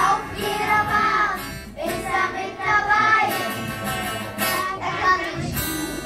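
A group of children singing a song together, accompanied by guitar.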